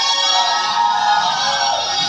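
Music with a held melody line that falls away near the end.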